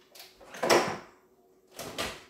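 A spice jar being put back in the pantry and the pantry door shut: a knock a little under a second in is the loudest, with a lighter knock near the end.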